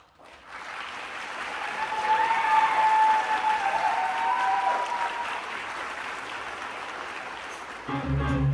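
Theatre audience applauding, with some cheering over it in the middle; the applause swells over the first few seconds and then slowly tapers off.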